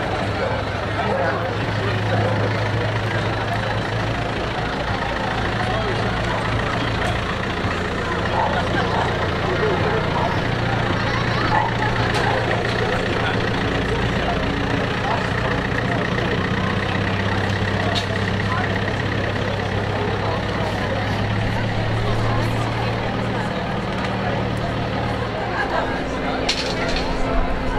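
Pickup truck engine running steadily at low revs as the truck creeps past, a low hum under the chatter of a roadside crowd.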